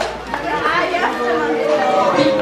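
Crowd chatter: several people talking at once.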